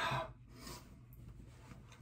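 A man's hard breath out through an open mouth at the start, then a softer breath a little later, the heavy breathing of someone whose mouth is burning from a Carolina Reaper pepper chip.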